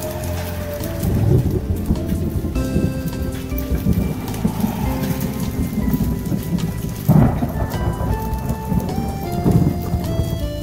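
Thunderstorm with hail: thunder rumbling over rain and small hail pattering on pavement and vinyl motorcycle covers, with louder surges of thunder about a second in and about seven seconds in. Background music with held notes plays over it.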